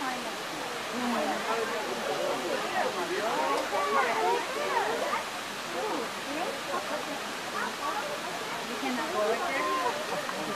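Overlapping chatter of several people talking at once, no single voice standing out, over a steady background hiss.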